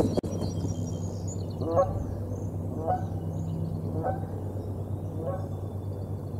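Geese honking four times, about a second apart, over a steady low hum, with faint high chirps in the first second or so.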